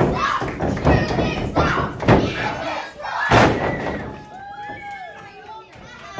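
Thuds of pro wrestlers' bodies hitting the ring mat as they grapple, about four impacts roughly a second apart with the loudest a little past halfway, under shouts and calls from a small crowd that includes children.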